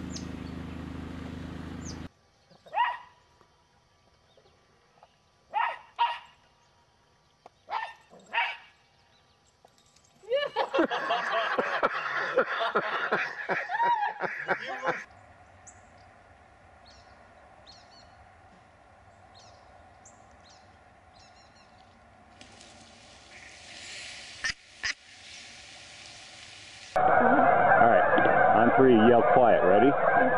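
Scattered duck quacks, each short, with quiet between them. Near the end a large flock of geese on open water sets up loud, continuous honking.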